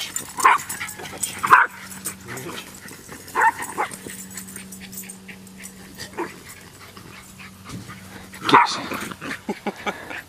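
Small dogs, a toy rat terrier among them, barking in play: a handful of short, sharp barks spaced through the few seconds, with a louder cluster near the end.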